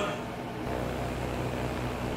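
Steady low drone of a single-engine propeller plane in flight, starting suddenly about half a second in.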